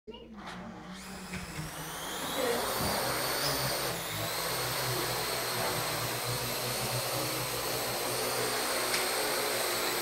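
Small quadcopter's electric motors and propellers spinning up about a second in, the whine rising in pitch as it lifts off, then holding a steady high whine and buzz as it hovers and flies.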